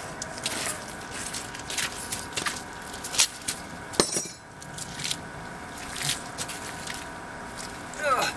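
Scattered knocks, scrapes and footsteps of people moving about and handling materials, with a sharp click about four seconds in.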